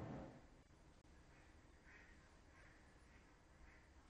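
Near silence: a stereo ambience recording played back very faintly through the hall, its hiss fading out just after the start, leaving only a faint run of short repeated calls, roughly two a second.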